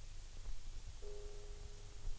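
Faint hiss and low hum of an old film soundtrack. About halfway through, a soft chord of three steady held notes comes in.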